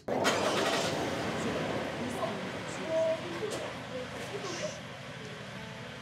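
Toyota Highlander SUV's engine starting with a sudden rush of noise, then running steadily and gradually quieter.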